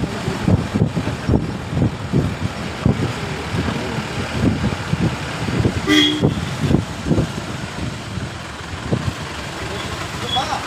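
Uneven low rumbling road noise from a vehicle on the move, with a short vehicle horn toot about six seconds in.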